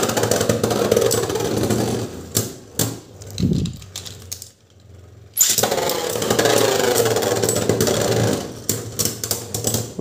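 Beyblade spinning tops whirring and scraping on the plastic floor of a Beystadium, with sharp clicks as they strike each other. The whirring fades to near quiet about halfway through, starts again suddenly, and breaks into scattered clicks near the end.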